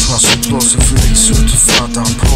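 Hip hop track: a drum beat with hi-hats and a held bass note, with a man rapping over it.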